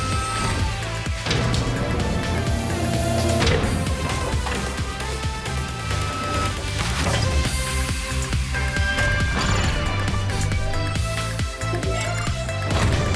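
Cartoon background music with a steady bass line and held tones, with a few sudden swishing sound effects laid over it.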